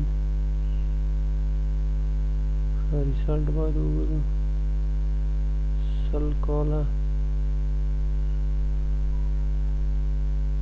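Steady electrical hum with evenly spaced tones running throughout. A man's voice says a few short words about three seconds in and again about six seconds in.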